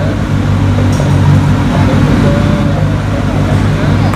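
Peugeot 106 N2 rally car's engine idling steadily.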